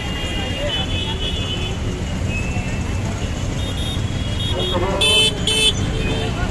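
Busy street traffic with a steady engine rumble, two short vehicle horn toots near the end, and voices in the background.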